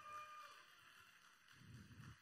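Near silence: room tone, with a faint held tone that fades out about half a second in.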